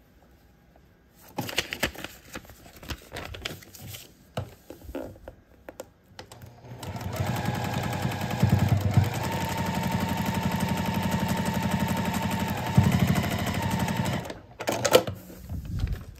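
Electric sewing machine stitching a seam through fabric and a paper foundation template at a steady speed for about seven seconds, then stopping abruptly. Before it starts, fabric and paper are handled with rustles and light clicks, and a few clicks follow after it stops.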